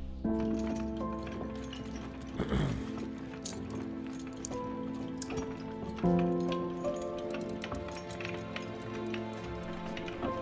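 Film score of sustained, held chords that change about six seconds in. A noisy whoosh with a falling pitch comes about two and a half seconds in, and light scattered clicks sound over the music in the second half.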